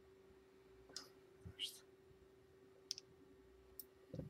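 Near silence over a faint steady hum, broken by a few faint clicks and one short scrape as the metal Steamboy Storm Rider 2.3 rebuildable atomizer is picked up and handled.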